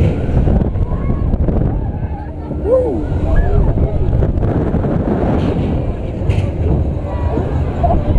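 Heavy wind buffeting the microphone on a swinging, spinning Zamperla Disco ride, a low, steady rumble. Riders' voices and short cries come through it, one rising-and-falling cry a few seconds in.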